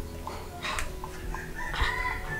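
A rooster crowing.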